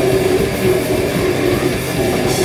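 A live heavy rock band playing loud and without a break: electric bass guitar and a drum kit.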